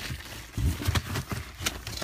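Cardboard boxes and plastic-wrapped firework packs being shifted and rustled by hand, with irregular knocks and clicks and low bumps from handling the phone.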